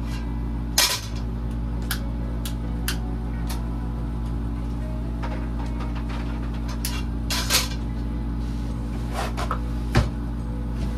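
A metal cooking pot clanking on a gas stove's grate about a second in, then a few small clicks and knocks while a long lighter lights a burner, and another clatter of the pot on the grate later on, over a steady low hum.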